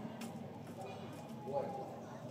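Background chatter of people's voices, with a faint click or knock now and then.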